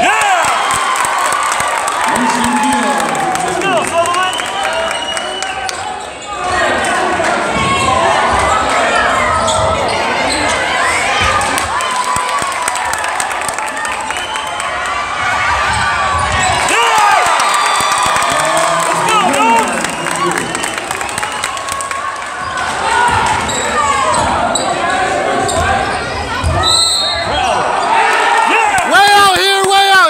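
Basketball game in a school gymnasium: the ball bouncing on the hardwood court and sneakers squeaking, over steady crowd chatter that echoes in the hall. The crowd voices swell into shouting near the end.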